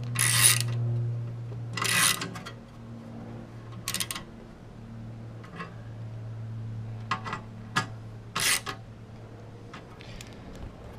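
Ratchet screwdriver tightening license-plate screws on a bumper mount: short runs of ratchet clicking, four in all, with a few small metallic ticks between them, over a steady low hum.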